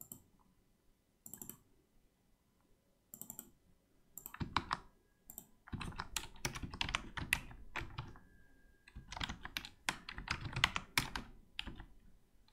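Typing on a computer keyboard. A few separate keystrokes come first, then rapid, continuous typing from about four seconds in, which stops shortly before the end.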